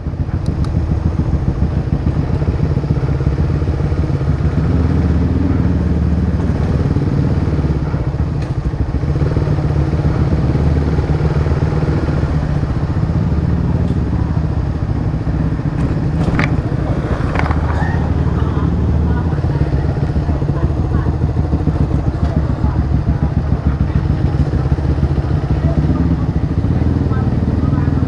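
Motorcycle engine running at low road speed, a steady low drone whose pitch rises and falls gently as the rider cruises and eases the throttle.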